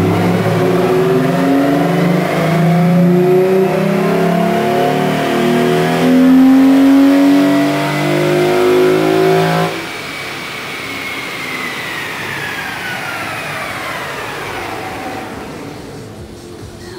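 Hyundai Tiburon's 2.7-litre V6 running hard under wide-open throttle on a chassis dyno during a power pull. About ten seconds in the throttle is cut and the engine note drops away, leaving the tires and dyno rollers spinning down with a whine that falls in pitch.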